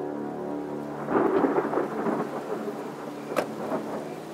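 Thunder sound effect over a sustained dark music chord: a rumbling crash about a second in, fading, then a sharp crack near the end.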